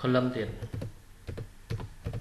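Computer keyboard being typed on: a handful of keystrokes in quick, uneven runs, entering a layer name.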